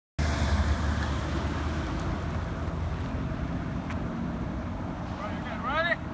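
Road noise of a car driving past close by, loudest at the start and fading, with wind on the microphone. A person's excited voice comes in near the end.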